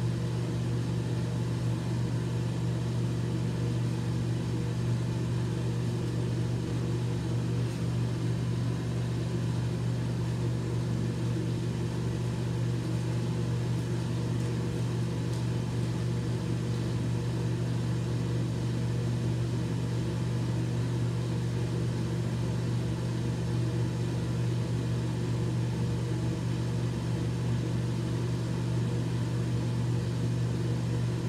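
A steady low mechanical hum at an even level, unchanging throughout, with no other distinct sounds.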